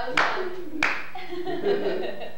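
Two sharp hand claps about two-thirds of a second apart, followed by voices talking.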